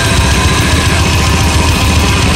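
Loud, dense extreme metal recording: heavily distorted guitars and bass with fast drumming, and a held high guitar note that fades about a second in.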